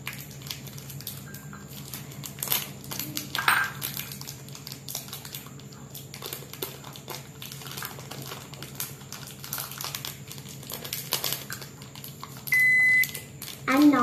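Crinkling of a plastic chocolate-bar wrapper being torn open by hand. Near the end, a single loud half-second microwave oven beep, the loudest sound, signalling that the cooking time is done.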